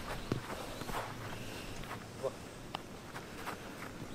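Footsteps and soft touches of a football on artificial turf, a few scattered light taps as players move with the ball.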